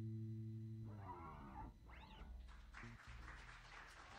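An electric bass guitar's last held note dies away. Then a voice calls out with a rising whoop, and soft applause begins about two and a half seconds in.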